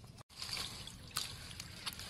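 Hands swishing a bunch of green onions through water in a metal basin: splashing and sloshing water with small clicks and drips, starting after a brief silent gap near the start.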